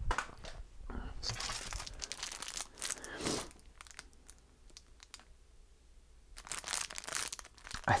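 Plastic packaging crinkling and rustling as it is handled, in two spells with a quiet pause of about two seconds between them.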